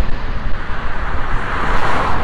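Steady outdoor noise with a deep rumble, swelling a little near the end.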